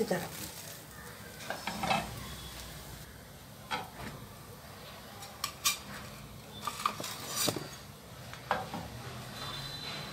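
Kitchen utensils knocking and scraping against a dosa pan and a stainless-steel plate as a dosa is folded and served: scattered short clinks, mostly a second or so apart, some in quick pairs.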